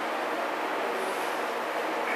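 Steady, even background hiss with no speech and no distinct events.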